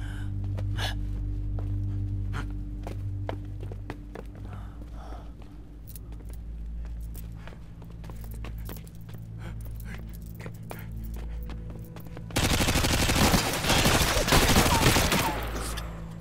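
Film shootout: scattered gunshots over a low, steady music drone. About twelve seconds in comes a sudden burst of rapid gunfire lasting about three seconds, the loudest part.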